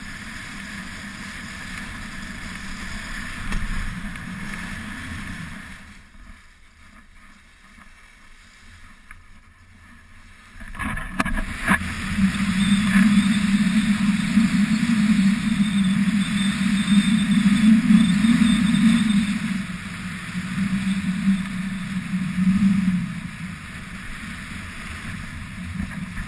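Wind rushing over an action camera's microphone during a ski descent, with the hiss of skis running on snow. It drops for a few seconds about a quarter of the way in, then comes back louder and buffeting.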